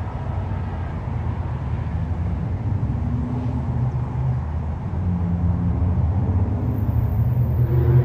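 Metrolink MP36 diesel locomotive's EMD prime mover running under power as the train pulls out, a low steady drone that grows gradually louder.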